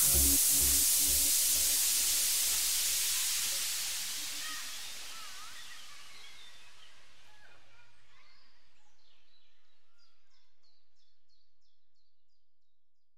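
Electronic dance-style background music fading out: the beat dies away in the first few seconds and a hissing wash slowly fades down. Faint short high chirps, like birdsong, are left near the end.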